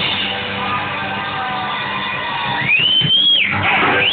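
Live band's electric guitars ringing out at the end of a song, chords sustaining. About three seconds in, a loud high whistle sweeps up, holds briefly and drops away.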